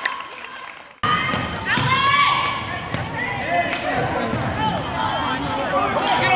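Indoor basketball game sound: a basketball bouncing on the hardwood gym floor, sneakers squeaking and players' and spectators' voices. The sound fades out and then cuts back in sharply about a second in.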